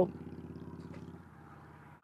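A steady low engine hum, likely a vehicle on the bridge road, fading away about a second in.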